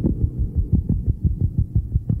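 Heavily muffled lo-fi cassette recording of a song: a rapid, even run of low thuds, about seven a second, over a steady low hum, with almost no treble.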